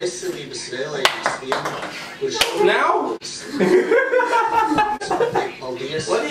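Champagne bottle being opened: a sharp pop about two and a half seconds in as the cork comes out, with laughter after it.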